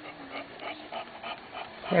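Newborn English Bulldog puppies in a litter making faint, small squeaks and whimpers as they squirm together. A woman's voice starts right at the end.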